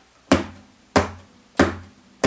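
Three sharp percussive hits on an acoustic guitar, evenly spaced about two-thirds of a second apart, keeping a steady beat as a count-in before the singing starts.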